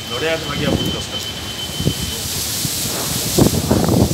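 Cyclone storm noise: a hiss of wind and rain that grows louder about two and a half seconds in.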